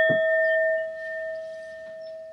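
Brass singing bowl ringing after a mallet strike: one clear, steady tone with a few higher overtones, slowly fading.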